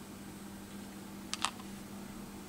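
Two quick light clicks, about a second and a half in, from handling a small vinyl toy figure and its card, over a steady low hum.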